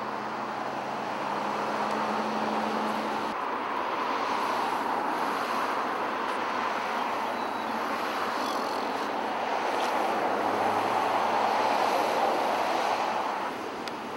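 Road traffic passing on the street: a steady rush of tyre and engine noise that swells as vehicles go by, twice, with a low engine hum early on and again near the second swell.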